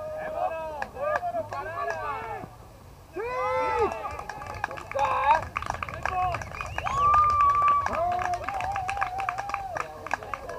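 Several voices shouting and calling out across a softball field during a play. Near the middle there is one drawn-out call about a second long, then further calls.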